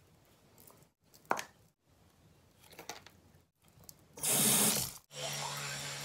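A bathroom tap runs for about a second, about four seconds in. Just after, an electric toothbrush is switched on and buzzes steadily with a low hum.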